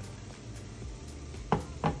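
Two sharp knocks of kitchenware about a third of a second apart, near the end, over a faint steady low background.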